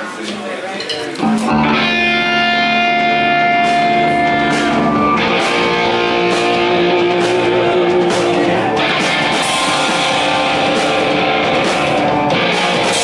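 A live rock band starting a song: electric guitars come in suddenly about a second in with held, ringing chords, and the drums and cymbals join about five seconds in for a fuller, louder band sound.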